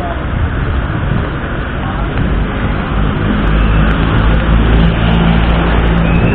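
City street traffic, with a motor vehicle's engine growing louder from about halfway through.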